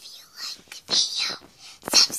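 A person whispering in short breathy bursts, with a sharp click near the end.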